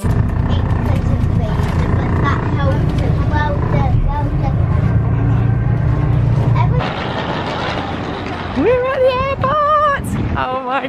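Low, steady rumble of a bus's engine and road noise heard from inside the moving bus, with voices faintly over it. About seven seconds in the rumble gives way to a lighter hiss, and near the end a child's high voice rises and wavers.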